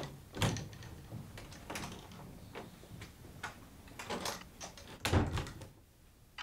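Dull household knocks and thumps: one thud just under half a second in, lighter knocks and clicks after it, and a heavier thud about five seconds in.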